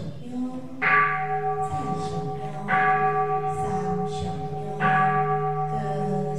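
Temple bell struck three times, about two seconds apart. Each strike rings on with a deep, sustained hum that overlaps the next.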